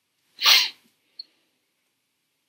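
A single short, sharp burst of breath about half a second in, followed by a faint click.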